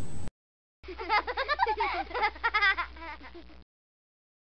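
A person's voice, thin and muffled with a steady low hum underneath. It starts about a second in and stops shortly before the end.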